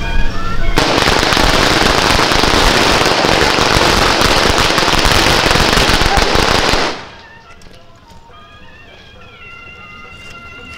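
A string of firecrackers going off in a dense, continuous crackle for about six seconds, starting just under a second in and cutting off abruptly. Faint music follows.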